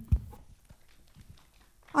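Handheld microphone being handled: one sharp thump just after the start, then faint clicks and rustles over low room tone.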